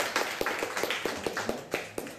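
Audience clapping: a scatter of separate hand claps that thins out toward the end.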